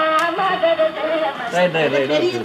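A person's voice, with music faintly under it.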